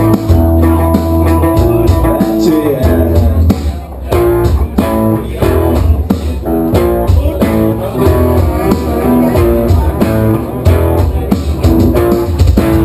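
Rock band playing live without vocals: electric guitars, bass guitar and drum kit. Held chords for the first few seconds, a short drop in loudness about four seconds in, then a choppier rhythmic riff.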